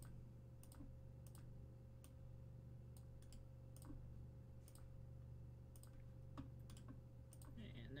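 Faint computer mouse clicks, a dozen or so single clicks at irregular intervals, over a steady low electrical hum.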